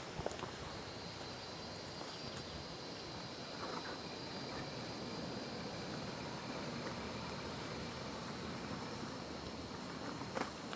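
A car coming slowly along a dirt road: faint, steady tyre and engine noise.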